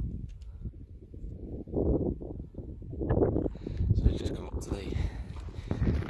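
Wind buffeting the microphone with a low, uneven rumble, with short snatches of indistinct speech about two and three seconds in.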